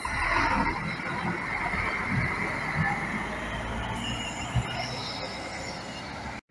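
Intercity coach pulling away: engine running with a low rumble and a steady high whine that eases off after about three and a half seconds.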